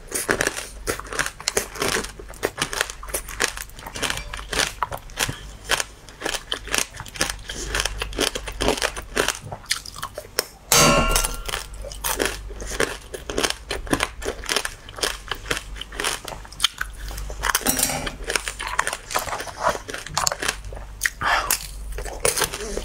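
Close-up crunching and chewing of frozen, sugar-glazed cherry tomatoes (tanghulu-style): the hard candy shell cracks in a rapid run of sharp crunches, with one loud crack about eleven seconds in.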